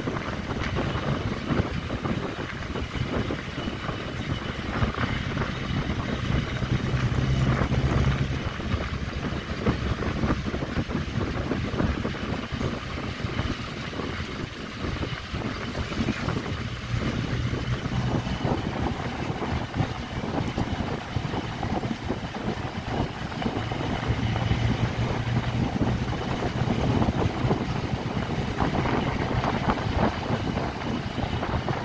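A vehicle driving along a road, heard from its open side window: steady engine and road noise with wind buffeting the microphone. The engine hum swells twice, about a quarter of the way in and again near the end.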